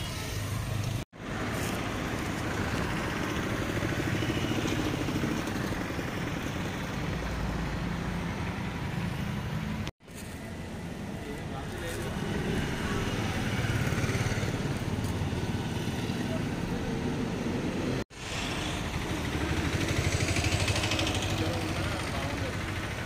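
A motor vehicle engine running steadily under outdoor background noise, with indistinct voices. The sound breaks off abruptly three times, about a second in, near the middle, and about three-quarters of the way through, where the clips are cut.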